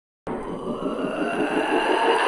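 A swelling electronic build-up: a noisy wash with faint rising tones that starts just after the beginning and grows steadily louder, leading into heavy metal music.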